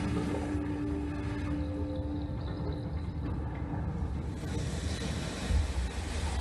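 Low rumbling ambient soundtrack of an immersive projection show, played through the venue's speakers. A held low note sounds over the rumble and fades out about halfway through.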